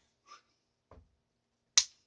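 One sharp slap of an open hand against a man's cheek near the end, with only a couple of faint small taps before it.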